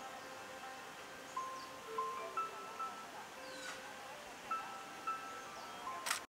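Soft background music of bell-like chime notes: single sustained tones at a few different pitches, struck one after another every half second or so.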